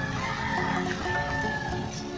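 A rooster crowing once, one long call that stops near the end, over background music.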